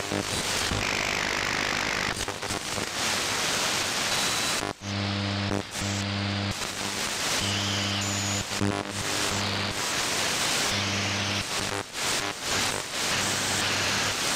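Shortwave AM reception through an RTL2832 SDR with a Ham It Up upconverter while tuning across the HF band: steady hiss and static, with a low buzz that cuts in and out every second or so and brief whistles as stations' carriers slide past.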